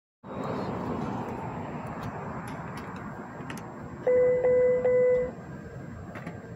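Three quick electronic beeps, about a second long in all and sounding about four seconds in, from a bus stop's talking real-time arrival sign as it begins its spoken announcement. Before them, a steady rush of outdoor background noise.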